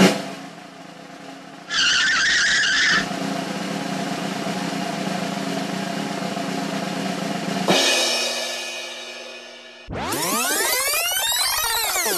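A string of edited sound effects: a sudden hit, a short high screech, a steady rushing noise, a second hit that fades away, then a swooping sound whose pitch rises and falls before it cuts off.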